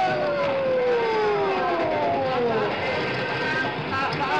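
Police car siren winding down, its pitch falling steadily over about two and a half seconds as the car comes to a stop.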